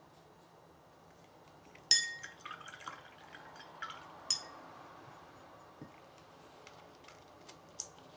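A paintbrush rinsed in a glass jar of water: two sharp, ringing clinks of the brush against the glass, about two and four seconds in, with faint sloshing and small ticks between.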